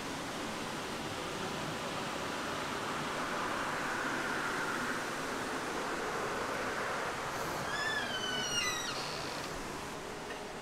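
Steady rushing of running water from a nearby waterfall, with a few short, high, falling chirps about eight seconds in.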